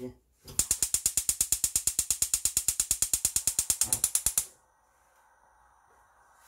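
Gas hob's electric spark igniter clicking rapidly, about ten clicks a second for nearly four seconds, then stopping as the burner lights; a faint steady hiss of the gas flame follows.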